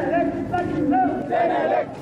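A crowd of demonstrators chanting and shouting slogans together, several voices overlapping.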